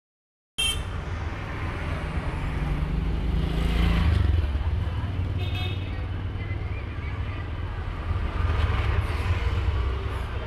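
Busy street traffic heard from a parked auto-rickshaw: a steady low rumble of motorcycle and scooter engines that swells twice as vehicles pass, with street voices and a couple of short high tones.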